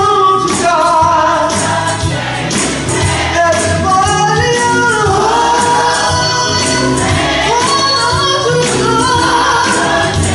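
Gospel choir singing with instrumental accompaniment: a steady beat and a bass line under the voices.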